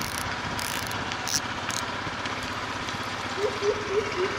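A CS6000 spinning reel being cranked to retrieve a lure, a steady mechanical whir, over a constant background hiss.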